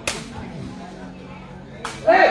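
Two sharp smacks of a sepak takraw ball being kicked, one right at the start and one near the end, with faint crowd murmur between them.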